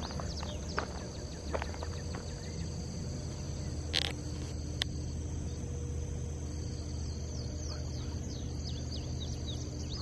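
Outdoor summer ambience of insects trilling steadily in the undergrowth, with short falling chirps scattered through it. A few soft ticks come in the first two seconds, and two sharp clicks come about four and five seconds in.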